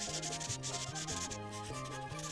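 Prismacolor marker tip rubbing back and forth on the paper in quick repeated strokes, a dry scratchy sound, as a background is filled in, with soft background music under it.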